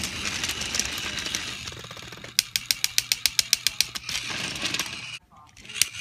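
Battery-powered plastic TrackMaster toy train running along plastic track: a steady motor whir, with a run of rapid, regular clicking, about eight clicks a second, for a second and a half in the middle. The sound drops out briefly near the end.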